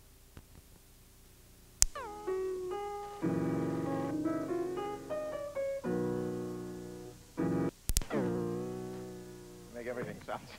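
Keyboard music with sustained, stepping notes, like an electric piano. It starts after about two seconds of near silence with a sharp click, breaks off briefly, resumes after a second click, and fades out near the end.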